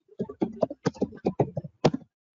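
Typing on a computer keyboard: a quick, uneven run of about a dozen keystrokes, the last one near the end the loudest.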